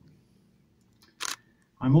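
A pause in speech with faint room tone, broken a little past a second in by one brief, sharp, hissy noise; a man's voice starts again near the end.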